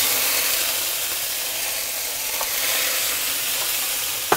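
Halved cherry tomatoes sizzling in hot olive oil, a steady loud hiss that starts as they hit the pan and eases only slightly.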